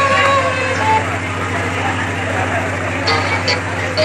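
Indistinct murmur of voices from a gathered crowd over a steady low hum, with two brief high-pitched tones about three seconds in.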